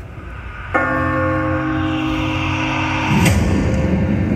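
Parade music over loudspeakers between songs: a bell-like chord comes in suddenly about a second in and rings on for about two seconds, giving way to a rougher low sound near the end.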